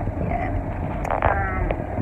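Steady low road and engine rumble heard from inside a minivan's cabin as it drives, with a short, faint voice about a second in.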